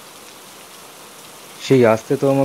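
Steady, even hiss of rain falling, heard clearly in a pause between lines; a voice starts speaking near the end.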